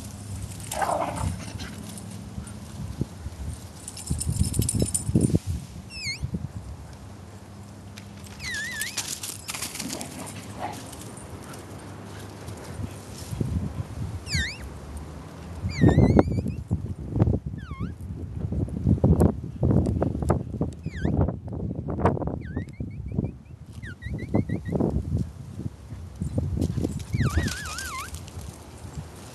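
Squeaking sounds made by a person's mouth to call dogs: short high chirps that sweep in pitch, coming in clusters, over irregular crunching steps on dry leaves and wood mulch. A short whistle comes near the end.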